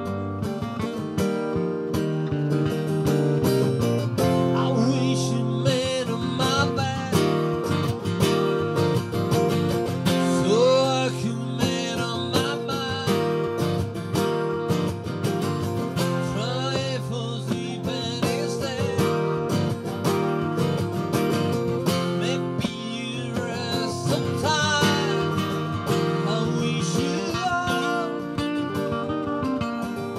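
Two acoustic guitars strumming and picking an instrumental passage of a folk-rock song, with a wavering melody line rising over the chords at times.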